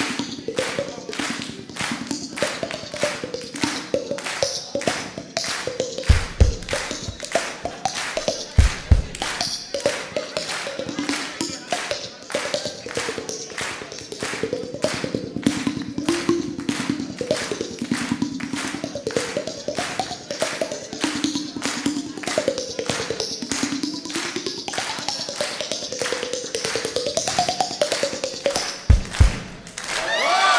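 Mouth-and-hand percussion at a microphone: hands tapping against the cheeks around an open mouth in a steady beat of about two and a half taps a second, over a low wavering hummed tone. A few deep thumps fall in about six and nine seconds in and again near the end.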